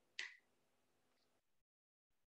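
Near silence broken by one short click about a quarter second in.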